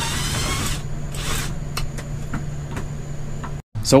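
Two short rasping scrapes and scattered light knocks from hand work on a wooden bed frame, over a steady low hum.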